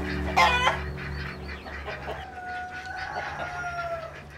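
A chicken gives a loud short squawk about half a second in, then a rooster crows in one long held call through the second half.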